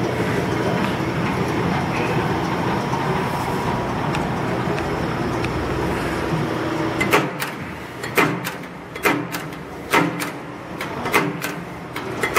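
Rousselle No. 2 15-ton OBI mechanical punch press running with its motor and flywheel turning, a steady, quiet mechanical hum. From about seven seconds in there is a series of sharp metallic clunks, roughly one a second. These are likely the press being tripped for single strokes, as a non-repeating press gives.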